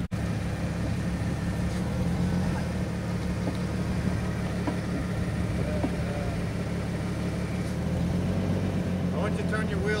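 Jeep Wrangler engine running steadily at low revs while crawling over slickrock, with faint voices near the middle and toward the end.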